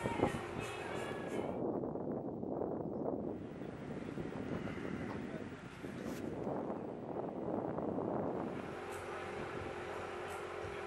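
Wind buffeting an outdoor microphone: a rough rumble that swells and eases.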